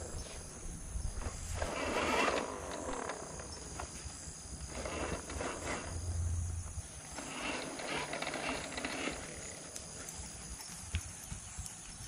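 Steel bow rake scraping through loose, levelled garden soil in a few slow strokes, each lasting a second or two, combing grooves into the bed for seed.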